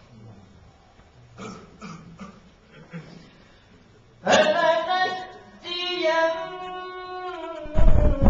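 Faint murmured voices, then about four seconds in a single voice starts a loud, melodic Arabic Qur'an recitation in tajwid style, drawing out long held notes.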